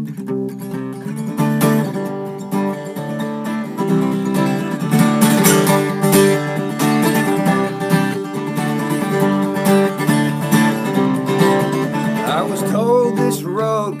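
Newly strung steel-string acoustic guitar strummed in a steady chord pattern as a song's intro. A man's singing voice comes in near the end.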